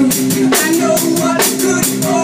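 Acoustic drum kit played along to a recorded rock song: a steady beat of drum and cymbal hits over the song's guitars and other instruments.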